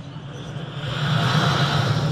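Vocal sound effect made with the mouth into a handheld microphone: a breathy rushing noise over a low hum that swells about halfway through.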